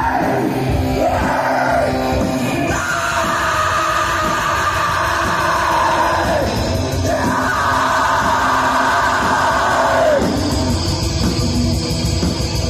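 Black metal band playing live: fast drums and distorted guitars under a screaming vocalist. The vocalist holds two long screams, each about three seconds, each dropping in pitch as it ends.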